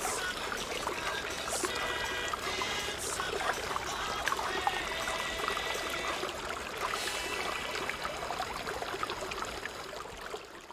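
Music playing together with the steady sound of running, pouring water.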